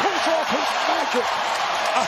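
Arena crowd cheering after a made basket, a steady roar of many voices, with a man's voice over it.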